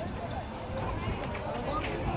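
Distant shouts and calls of players and coaches on a football pitch over a steady low rumble, with a short knock near the end.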